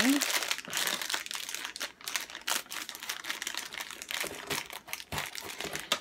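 Plastic toy packaging crinkling and crackling as it is handled, in an irregular run of small crackles.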